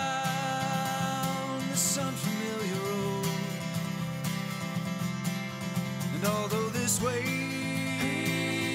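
A country-bluegrass band playing a song: banjo, fiddle, upright bass and drums under a melody of long held notes that slide from one pitch to the next.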